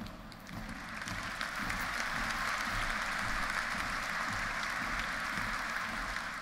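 Audience applauding, building up about half a second in and then holding steady.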